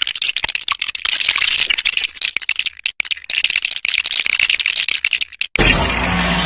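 Video-game building sound effects: a fast, dense stream of clicks and rattles as structure pieces are placed in quick succession. Near the end it gives way to a short, loud, distorted burst with heavy bass.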